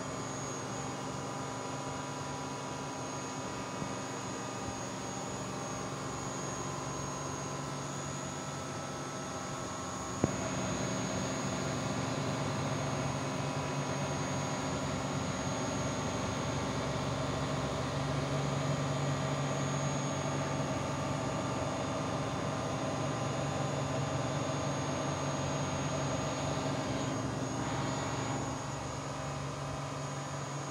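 CNC milling machine running: a steady machine hum with a thin high whine. A sharp click comes about ten seconds in, after which it runs a little louder, and the level drops a couple of seconds before the end.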